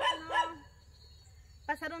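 A woman's voice speaking, trailing off about half a second in, then a short pause, and speech starting again near the end.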